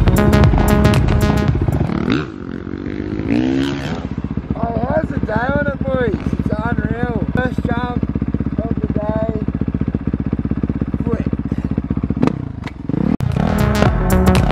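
Dirt bike engine ticking over at idle, with a short rising rev about two seconds in; a man's voice talks over the idle in the middle. Electronic music plays at the start and comes back near the end.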